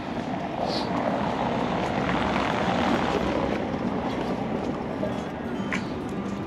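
Rushing noise of a vehicle passing, building to a peak about halfway through and easing off.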